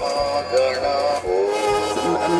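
Dhyanam Divine Voice electronic mantra chanting box playing a sung devotional chant, with long held notes that shift pitch a few times.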